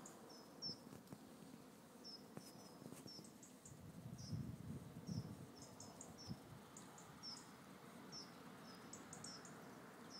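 Near silence with faint, short, high-pitched chirps repeating every half second or so throughout, and a brief low rumble about four to five seconds in.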